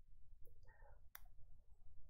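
A single faint click a little past halfway, over quiet room tone with a low hum.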